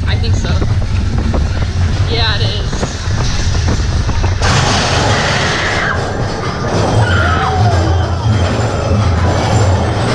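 Mine-train roller coaster running along its track in a dark themed show tunnel, a steady low rumble under the ride's themed soundtrack. A sudden hissing burst comes about four and a half seconds in.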